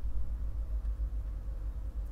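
A steady low rumble with a faint hiss above it and no distinct sounds; no kneading or other handling noise stands out.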